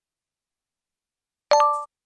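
About one and a half seconds in, a short electronic ding sounds: a chord of a few steady tones that cuts off after about a third of a second. It is an e-book interface sound effect.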